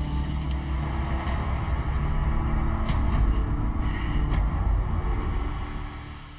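Low, rumbling dramatic underscore music with sustained bass tones, fading near the end.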